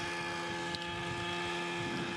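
Computer-controlled model helicopter flying overhead, its engine and rotor making a steady drone that holds one pitch, heard as video playback.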